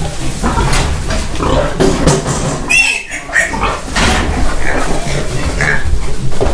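Piglets grunting and squealing as they are caught and lifted by the hind legs into a plastic crate, with a short high squeal about three seconds in.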